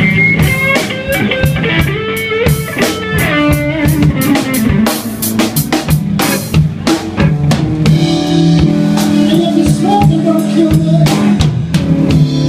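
Live blues band playing an instrumental stretch: electric guitars and bass guitar over a drum kit keeping a steady beat. Quick guitar runs fill the first few seconds, and held notes come in later.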